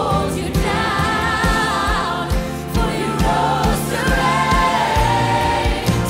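Worship song performed live: a female lead vocalist sings the melody with a choir and an accompanying band and orchestra, over sustained low chords and a steady beat.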